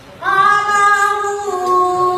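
A young boy singing into a microphone: his high voice comes in about a quarter of a second in and holds one long note.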